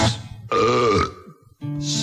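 A burp, about half a second long, sounds in a break in a slow song with guitar; the song stops just before it and starts again about a second and a half in.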